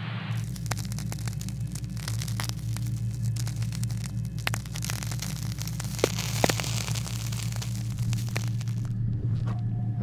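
Radio-receiver static: dense crackling and sharp clicks over a steady low hum, typical of a VLF radio picking up atmospherics. The crackling starts about a third of a second in and stops shortly before the end.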